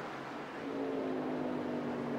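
NASCAR race truck V8 engines running at speed on the track, a steady engine drone that grows louder about half a second in.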